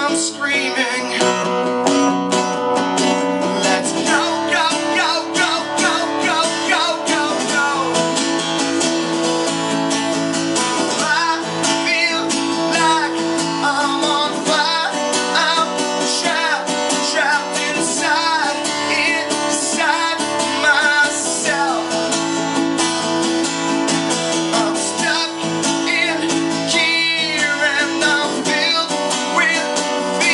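Acoustic guitar strummed steadily while a man sings over it, his voice most prominent in the second half.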